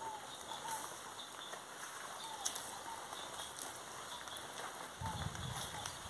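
Light rain making a faint, steady hiss, with a few short high squeaks scattered through it. Near the end a low rumble of movement comes in.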